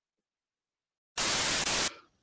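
Silence, then a burst of static hiss lasting under a second that starts and stops abruptly: a static sound effect marking a cut between two clips.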